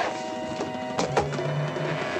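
Film score of steady held tones, cut by sharp hits: one at the start and two close together about a second in.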